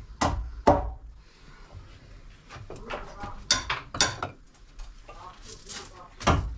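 Sharp knocks of a hand tool tapping a sawn stone block down into its bed on top of a block wall. There are two knocks at the start, a lull, then a few more in the second half.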